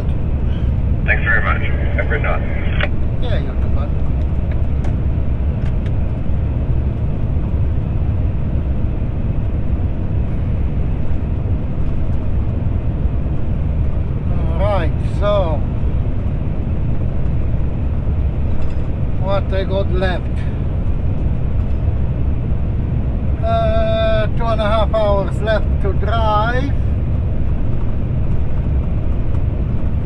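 Road train's diesel engine and tyre noise heard steadily from inside the cab at cruising speed. A voice breaks in briefly a few times.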